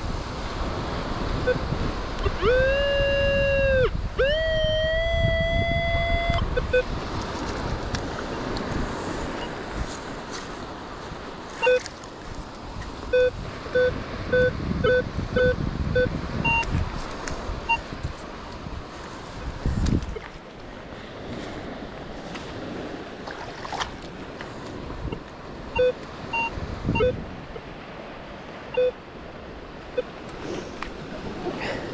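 Metal detector audio signalling over wet beach sand: two held target tones a few seconds in, the second sliding upward in pitch, followed by scattered short beeps. Wind and surf noise run underneath.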